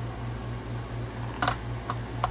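Two sharp clicks about half a second apart near the end, from a Walther P1 pistol being turned over in the hand, over a steady low hum.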